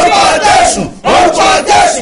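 Voices shouting a repeated "oh, oh, oh" in fervent prayer, loud and sustained, in two long phrases with a short break about a second in.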